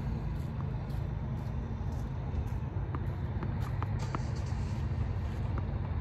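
Steady low outdoor background rumble, with a few faint short ticks.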